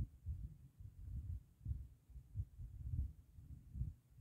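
Wind buffeting the microphone: an uneven low rumble in gusts, swelling and dropping several times.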